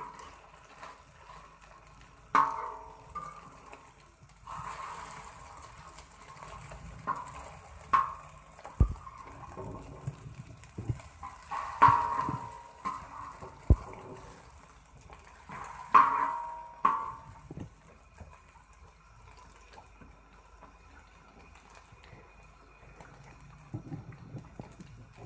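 Egg-coated potato patties shallow-frying in oil on a flat iron griddle (tawa): a faint steady sizzle. A metal spatula scrapes and clinks on the iron a few times, several seconds apart, as the patties are turned.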